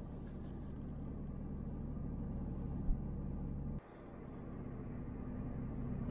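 Steady low engine and road hum heard from inside a moving car's cabin. It drops out suddenly about four seconds in and swells back up, with a small tick just before.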